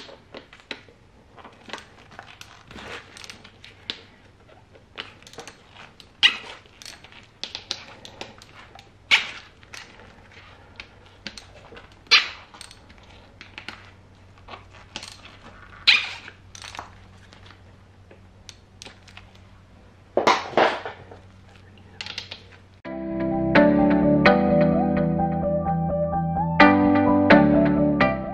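Ratchet with a 6 mm hex socket clicking as the valve cover's hex-head bolts are loosened, with louder sharp sounds every few seconds. Background music comes in near the end.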